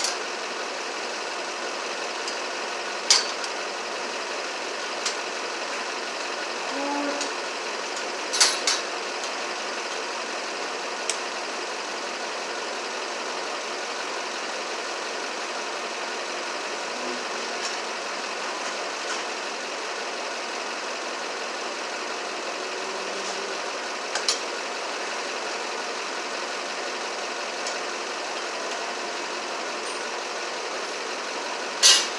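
A steady mechanical running noise throughout, with a few sharp clicks and taps as a photo-eye light sensor and its wiring are handled, the loudest about three and eight seconds in.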